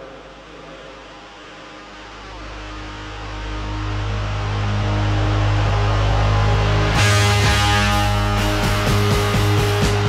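Rock band music: a sustained low guitar chord swells up over the first few seconds, then drums and cymbals crash in about seven seconds in and the band plays on loudly.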